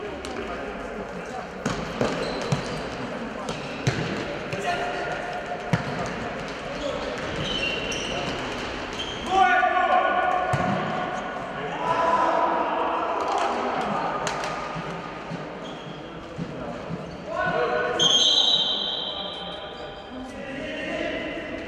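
A futsal ball being kicked and bouncing on a sports-hall floor, a scatter of sharp knocks. Players' shouts ring out in the hall, loudest about halfway through and near the end.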